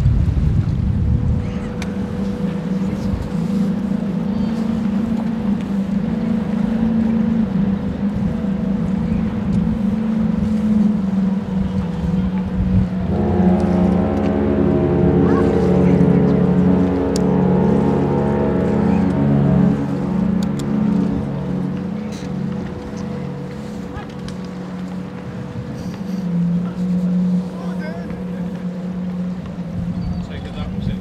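The cruise ship Allure of the Seas sounds her ship's horn in one long, deep blast of about seven seconds, starting suddenly about halfway through. A steady low machinery hum runs underneath throughout.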